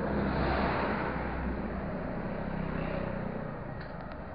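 A motor vehicle passing close by on the road, its engine and tyre noise swelling within the first second and then slowly fading. Two short clicks near the end.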